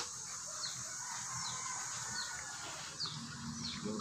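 A small bird chirping over and over: short, high, falling chirps about every half second to a second, faint behind a low background hiss.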